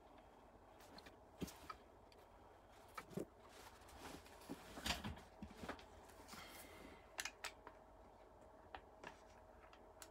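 Faint scattered clicks and light knocks of the air rifle being handled and lifted off the workbench, over quiet room tone.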